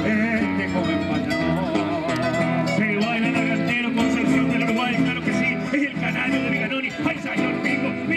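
Acoustic guitar playing with a voice singing improvised verses over it, amplified through a loudspeaker.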